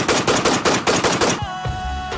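Rapid automatic gunfire, about six shots a second, stopping about one and a half seconds in, when music starts.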